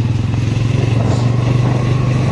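Motorcycle engine running at a steady speed while riding, a steady low hum throughout.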